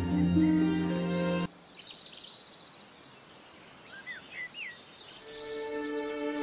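Held music chords that cut off suddenly about one and a half seconds in, giving way to songbirds chirping and whistling. Music comes back in near the end.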